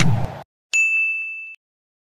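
A single bright 'ding' chime sound effect, starting sharply just under a second in and fading away within about a second, set against dead silence.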